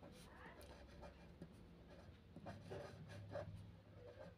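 Pen writing on paper, a faint series of short scratching strokes as words are handwritten.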